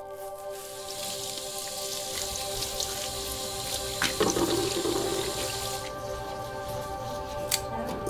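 Water running from a tap into a sink as corn is rinsed under it; the flow stops about six seconds in. There is a soft knock about four seconds in and a couple of sharp clicks near the end, with gentle ambient music of held tones underneath.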